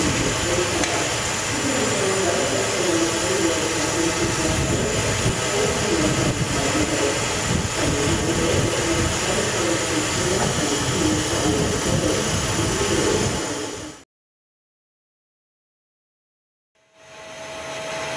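Pyrolysis gas burning in a pyrolysis furnace at its pilot jets: a steady, loud combustion roar with a wavering low rumble, mixed with the running plant. It cuts off suddenly about fourteen seconds in, followed by a few seconds of silence.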